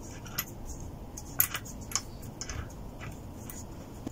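Honda CB125F gearbox shafts being spun by hand in the crankcase half, the gears and selectors giving off light, irregular metallic clicks and ticks, the sharpest about a second and a half in. It is a hand spin to check that the freshly fitted gearbox turns without catching.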